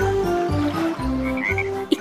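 Frog croaking sound effect, low croaks repeating about twice a second, over a simple children's-tune melody.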